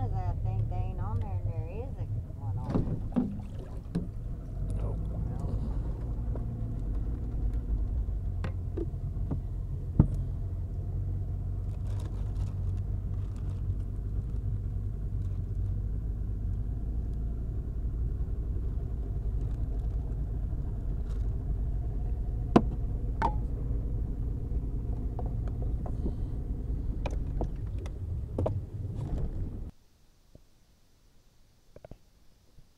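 Boat motor running steadily with a low hum, with a few sharp handling clicks about ten seconds in and again past twenty seconds; it cuts off just before the end.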